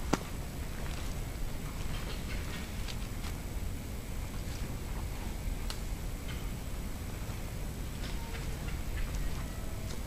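Forest ambience outdoors: a steady low rumble with scattered faint ticks and patters, and one sharp click right at the start.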